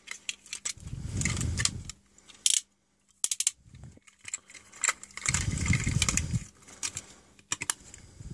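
Hard plastic parts of a Transformers Leader Class Armada Megatron figure clicking and clattering as it is twisted and folded from tank into robot mode: a scatter of sharp clicks, with two longer stretches of rubbing and rattling, about a second in and again around five to six seconds.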